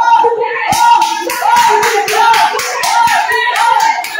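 Rhythmic hand clapping, about four claps a second, starting about a second in. A voice chants the same short phrase over and over beneath it.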